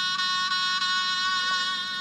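Harmonium holding one steady chord, a sustained reedy tone that does not change.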